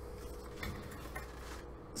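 Quiet room with a steady low electrical hum and a couple of faint small knocks as a pump shotgun is lifted and handled.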